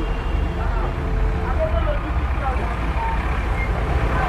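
Busy street ambience: a steady low rumble of traffic and motorcycle engines, with faint voices in the background.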